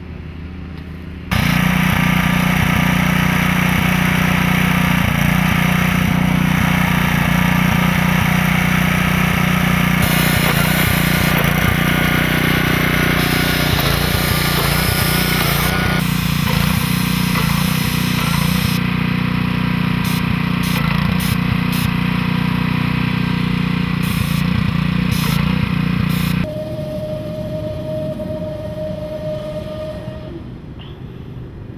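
Small engine running steadily and loudly. It cuts in about a second in and drops away a few seconds before the end, with a series of sharp clicks in its second half.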